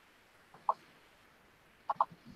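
A computer mouse button clicked twice, a short faint click about half a second in and another near the end.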